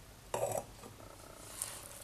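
Hands working crumbly whole-wheat dough and loose flour in a bowl: quiet, soft rustling, with one brief louder noise about a third of a second in.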